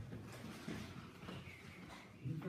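Faint, indistinct voices and room noise in a small room.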